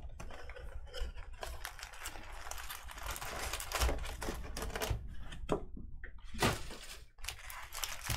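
Cardboard card box being opened and handled, then foil-wrapped trading card packs pulled out: an irregular run of scratchy rustles, crinkles and light clicks.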